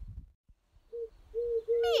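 A dove cooing: a run of short, low, steady coos starting about a second in.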